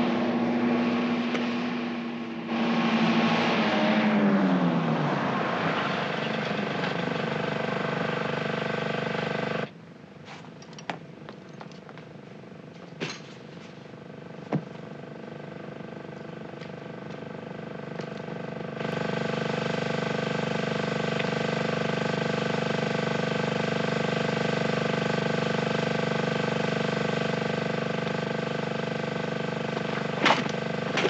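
A vehicle engine running steadily, its pitch falling away over a couple of seconds as it pulls off. After a sudden cut about ten seconds in comes a quiet stretch with a few sharp clicks, then a steady drone for the last third.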